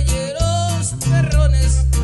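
Live norteño band playing a corrido: accordion melody over bass notes and a guitar rhythm.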